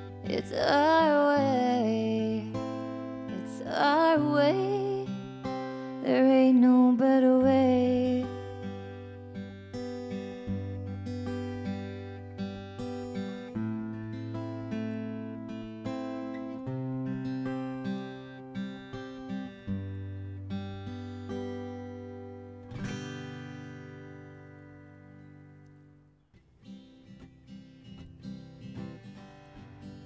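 Acoustic guitar played with a woman's voice singing long, wavering notes over it for the first eight seconds. The guitar goes on alone, and a last chord struck about two thirds of the way in rings out and fades almost to nothing: the end of the song. A few faint small taps follow.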